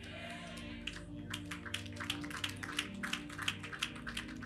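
Congregation clapping over sustained background keyboard music. The music holds steady chords while scattered hand claps come in about a second in and carry on quickly and unevenly.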